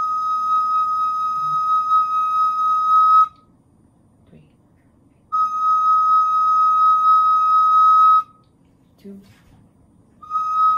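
Wooden recorder playing one long, steady held note that stops about three seconds in. After a pause of about two seconds, the same note is held again for about three seconds.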